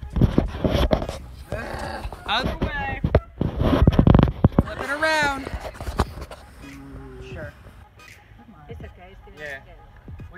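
People talking and laughing, with loud rubbing and bumping from a hand handling the phone right over its microphone during the first half.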